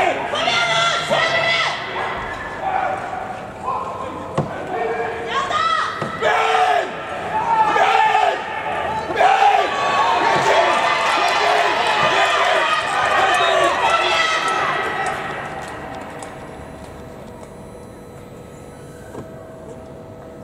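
Raised voices in a large indoor skating hall, with a few sharp knocks among them. The voices die away about fifteen seconds in, leaving quiet hall background.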